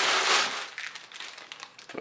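Tissue wrapping paper and plastic bags crinkling as a hand rummages through them in a cardboard shoebox. The rustle is loudest in the first half-second, then thins to scattered crackles.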